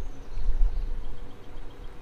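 Wind buffeting the microphone, an uneven low rumble strongest about half a second in, with a faint steady hum beneath. A short run of faint, quick, even ticks comes in the second half.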